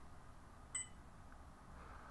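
A single short electronic beep about three quarters of a second in, over faint room tone.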